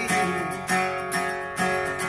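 Acoustic guitar strummed in a steady rhythm, chords ringing between strokes.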